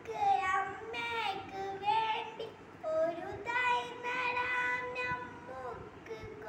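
A child singing a slow melody in a high voice, holding long, steady notes and gliding between them.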